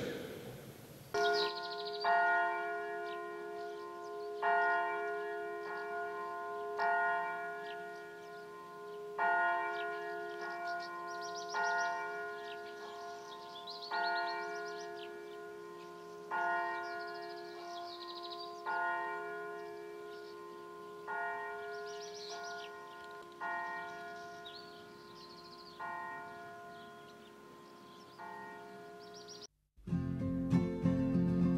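Church bell of a village parish church ringing, struck about every 1.2 seconds with louder and softer strokes alternating, each stroke ringing on into the next. The ringing stops abruptly just before the end.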